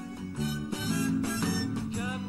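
Live band accompaniment to a French-language pop song, playing a short instrumental passage with strummed, plucked chords between the singer's lines.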